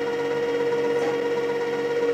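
Electric chocolate fountain running: its motor gives a steady hum at one constant pitch.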